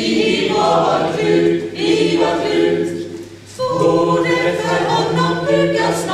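Small mixed choir singing in harmony, holding chords in several parts, with a short break for breath about three seconds in before the next phrase.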